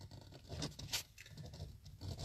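A pen scratching on paper as a signature is written on a contract, faint and irregular, with a few light ticks.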